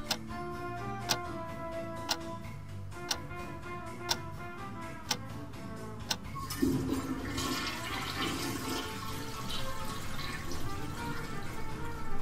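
A watch ticking loudly, once a second, over soft sustained music tones; about six and a half seconds in, a toilet flushes and the water rushes for several seconds.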